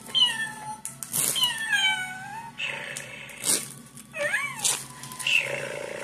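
A cat meowing several times, each call a bending, pitched cry, with a few sharp clicks in between.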